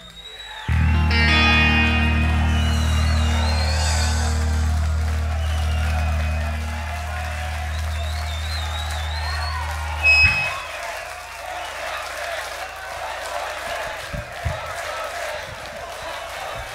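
Heavy metal band's closing chord held on guitars and bass for about ten seconds, then cut off sharply, over a live crowd cheering that carries on after the chord stops.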